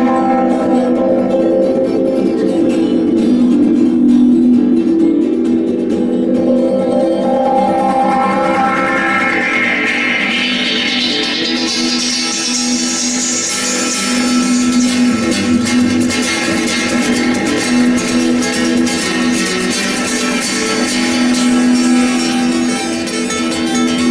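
Amplified acoustic guitar played live, plucked, with low notes held ringing underneath throughout. Around the middle a bright high tone climbs steadily in pitch.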